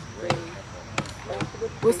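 Three short, sharp knocks spread over about a second, the middle one the sharpest.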